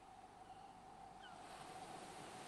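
Near silence: faint hiss with a faint steady tone, slowly getting a little louder.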